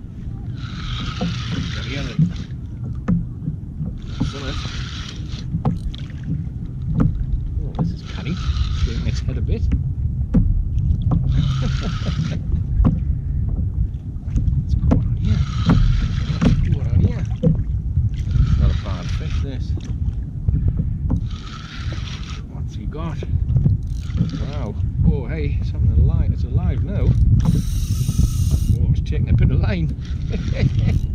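A fixed-spool fishing reel whirring in short bursts, about one every three to four seconds, as it is wound against a hooked fish on a hard-bent rod. Steady low wind rumble underneath.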